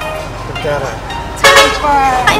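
People talking, with a loud, short sound rich in pitch about one and a half seconds in.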